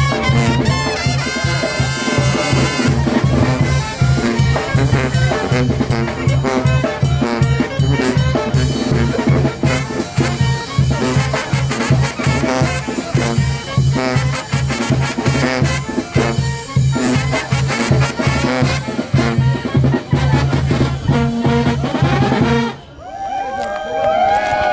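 Mexican brass banda playing a fast dance tune live: sousaphone bass line with a steady beat, trumpets, trombones, clarinets and saxophone. Near the end the music cuts off and a short electronic logo sound with sweeping, rising and falling tones takes over.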